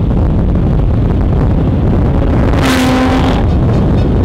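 Lotus Exige Sport 380 driven at speed on track: loud, steady engine, road and wind rush on a car-mounted microphone, with a short pitched note about three seconds in.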